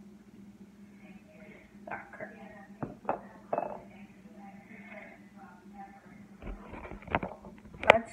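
Faint, indistinct talk with a few sharp clicks and knocks as a metal spoon and a hot sauce bottle are handled on a stone counter, the loudest knock near the end. A steady low hum runs underneath.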